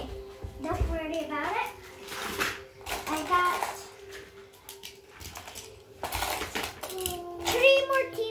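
A young child's voice making wordless sliding sounds, rising and falling in pitch, three times, with small die-cast toy cars clattering against each other in a plastic box in between.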